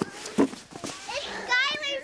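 Children's voices at play, with a child's high-pitched call near the end and a short knock about half a second in.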